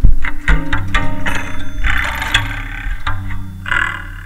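Wire strings stretched across a prepared LM Ericsson switchboard, plucked and struck by hand and played through a circuit-bent Behringer distortion pedal. A quick irregular run of sharp, distorted plucks over a steady low hum, with the last stroke near the end and then dying away.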